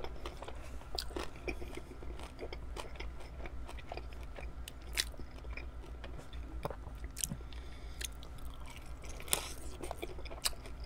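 Close-miked biting and chewing of a crispy chicken wing dipped in ranch, with irregular crunches throughout and a few louder ones about halfway and near the end.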